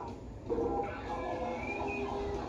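A person laughing, starting about half a second in, with TV clip audio playing underneath.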